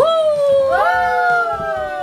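Two long, howl-like voiced cries that slide slowly down in pitch. The first rises sharply at the start, and a second, higher one joins about three-quarters of a second in.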